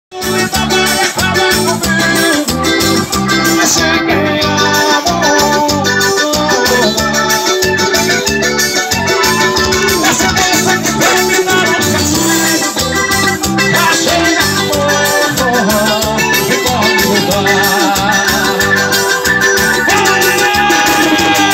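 Live music played on an electronic arranger keyboard: an organ-like lead melody over a steady beat of drums and bass.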